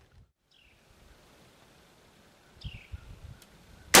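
Quiet woods with two short falling whistles, then a single loud gunshot just before the end.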